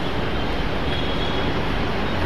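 Steady background noise with no speech: an even hiss across the range over a low rumble, holding level throughout.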